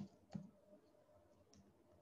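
Near silence with two faint clicks in the first half-second, as of computer input while a syllable is typed into a PDF.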